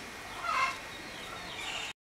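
Domestic fowl calling: one short call about half a second in, and a fainter, higher call near the end.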